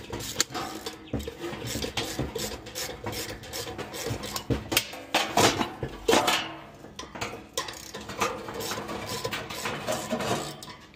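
Hand tools working a furnace blower wheel off its motor shaft: a wrench clicking and metal knocking and rattling against the sheet-metal wheel and housing, with the loudest clanks a little past the middle.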